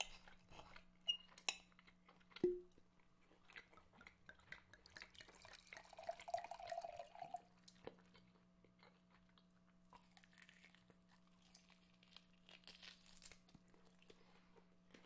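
Very faint chewing and crunching sounds, scattered small wet clicks over a low steady hum, with one sharper click a couple of seconds in.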